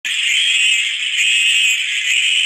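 A chorus of cicadas buzzing steadily and high-pitched, the cartoon's summer-day sound effect.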